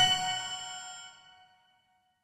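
The closing note of a song's bell-like chime melody, struck once with a low note under it, ringing out and fading to silence about a second and a half in.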